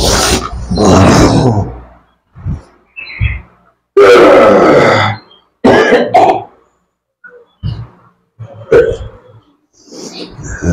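Men's loud, harsh guttural cries, growls and hacking coughs in a series of outbursts: a long one at the start, the loudest about four seconds in, another about six seconds in, and short ones near the end. They come from men in a trance during a rite against black magic (santet).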